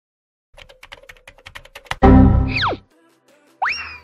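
Quick computer keyboard typing, about a dozen keystrokes, as the command 'adb devices' is entered. Then a loud sound effect whose pitch drops steeply, and near the end a short sound effect rising in pitch.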